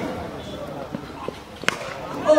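Open-air ambience with a faint background murmur of voices, broken by a few soft knocks and one sharp knock about three-quarters of the way through.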